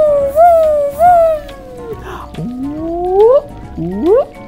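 A person's voice making drawn-out, sliding 'whoom' sound effects: three wavering rise-and-fall hoots in the first two seconds, then a long upward whoop and a second short rising one near the end, over light background music.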